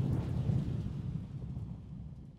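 A deep, thunder-like rumble used as a logo-intro sound effect, peaking about half a second in and then slowly fading away.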